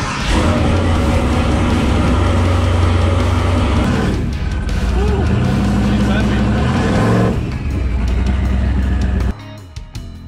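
Turbocharged LS V8 of a Chevy S10 race truck running loud under acceleration on its first drive, with the revs dropping at a gear change about four seconds in and again about seven seconds in. The engine sound cuts off suddenly near the end, leaving quieter music.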